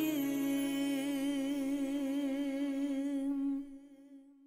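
A woman's voice holding one long final note of a song with vibrato, over a sustained low backing note, fading out near the end.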